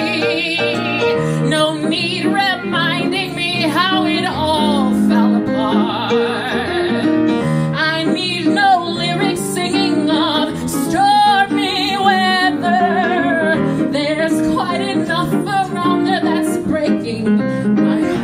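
A woman belting an uptempo show tune with a wavering vibrato on the held notes, accompanied by a grand piano.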